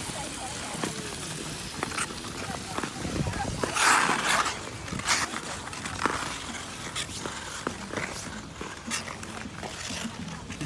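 Ice skates on outdoor ice: scattered clicks and knocks of blades and boots, with one longer scrape about four seconds in. Faint voices of other skaters sit in the background.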